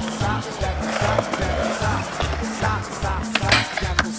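Latin-style song with a steady bass beat and singing, over which skateboard wheels roll on concrete. A sharp skateboard clack comes about three and a half seconds in.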